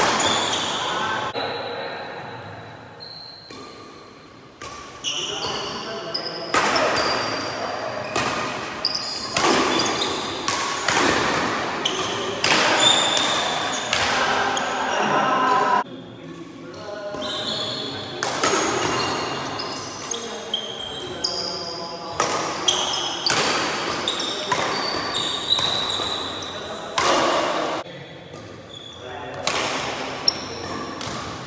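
Badminton rally in a reverberant hall: repeated sharp racket strikes on the shuttlecock, with short high squeaks of shoes on the wooden court.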